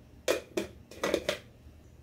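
Glass spice jar and its plastic lid handled: four or five sharp clicks and knocks in the first second and a half as the jar is capped and set down.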